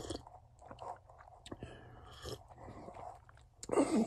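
Mostly quiet pause with a few faint, short clicks and soft breath-like noises scattered through it; a man's voice starts again just before the end.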